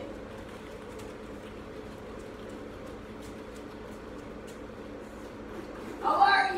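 Steady low hum of an electric fan running, over room tone, with a few faint ticks.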